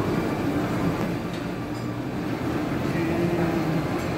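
Steady background din of a busy buffet dining room, with indistinct voices and no clear words.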